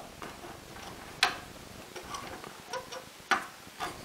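Sharp clicks of carbon-fibre frame parts knocking together as a drone arm is handled and fitted to the frame plate: one about a second in, a couple of fainter ones, and two more near the end.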